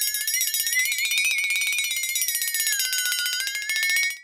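Rapid, continuous ringing like an electric alarm bell, played as a sound effect. Its pitch wavers, rising over the first second, dipping about three seconds in, then rising again.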